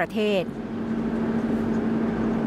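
Steady engine and road noise inside a minibus driving along a highway, with an even drone that holds one pitch.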